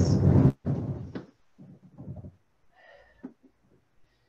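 Rustling and dull knocks as a person shifts their body back onto an inflatable exercise ball. The sound is loudest in the first second, then turns to fainter, scattered shuffling.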